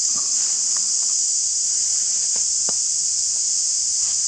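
Steady, high-pitched drone of an insect chorus, unchanging throughout, with a few faint ticks.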